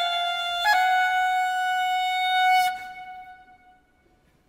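Solo clarinet playing alone: it changes note about a second in, then holds one long note that stops shortly before the three-second mark and dies away in the hall's reverberation.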